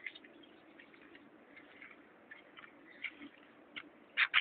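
Terns calling faintly: a few short, sharp high calls scattered a second or so apart.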